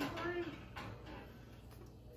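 A brief voice sound at the start, then quiet room tone with a couple of faint light knocks as a baked-oatmeal bowl is lifted off a metal oven rack.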